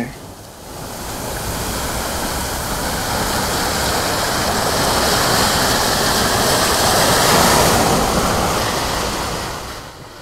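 Ocean surf washing on a sandy beach, a steady rush of waves that swells gradually and then fades away near the end.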